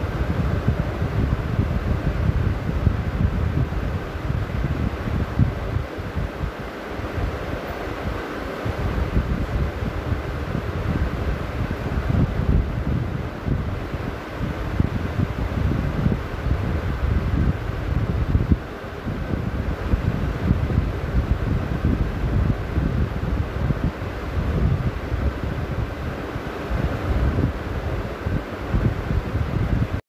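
Wind buffeting an outdoor microphone: a gusty, rumbling noise that rises and falls throughout.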